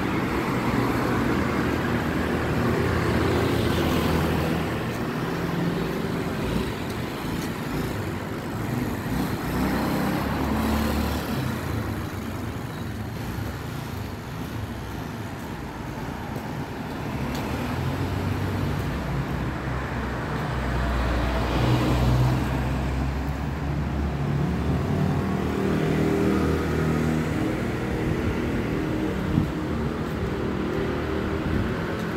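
Town street traffic: cars and motor scooters passing one after another, their engine and tyre noise swelling and fading. The loudest pass comes about two-thirds of the way through.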